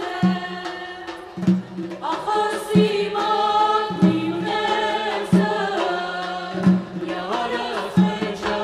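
Armenian folk song: a woman's voice singing a slow, ornamented melody over a dhol drum struck about once every 1.3 seconds.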